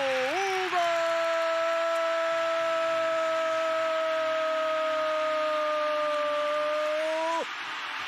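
A Brazilian TV football commentator's long, held 'gooool' shout for a converted penalty: one sustained note of about seven seconds that cuts off near the end. Under it, a stadium crowd is cheering.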